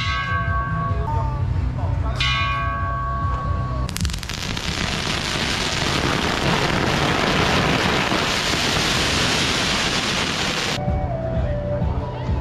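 Firecrackers set off on the road: a dense, continuous crackle of rapid bangs that starts about four seconds in and stops abruptly near the end. Before it, music with ringing, bell-like tones.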